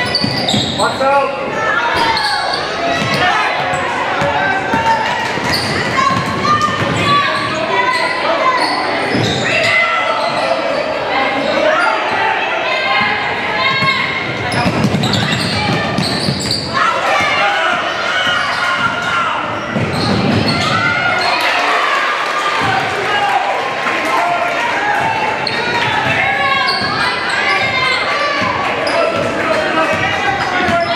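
Basketball game in play on a hardwood gym floor: the ball bouncing, over a steady hubbub of players' and spectators' voices in a large gym.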